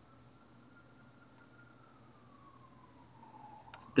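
Near silence: faint room tone with a low hum, and a faint thin tone that slowly rises and then falls in pitch.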